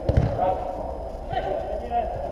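A football thuds hard once just after the start, with a couple of lighter knocks later, under players' shouting in an indoor dome hall.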